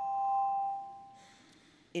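A sustained ringing tone on two pitches at once, swelling to its loudest about half a second in and fading away by about a second in.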